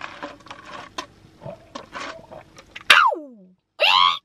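Quiet gulping and swallowing from a plastic cup of iced drink, with small clicks. About three seconds in comes a loud 'aah' of relief whose pitch falls steeply, and a second loud cry just before the end.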